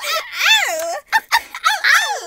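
Girls laughing and shrieking: a long high squeal that wavers up and down in pitch for about a second, followed by short bursts of laughter.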